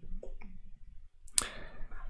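A single sharp click about one and a half seconds in, with a couple of faint small ticks before it, over quiet room tone.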